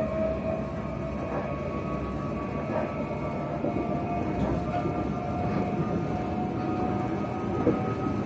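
Passenger train running at speed, heard from inside the carriage: a steady rumble of wheels on the track with a motor whine that rises slowly in pitch as the train gathers speed. A single short click comes near the end.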